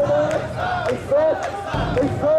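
A crowd of mikoshi bearers shouting a rhythmic carrying chant as they heave the portable shrine along. It comes as short group shouts, about two a second.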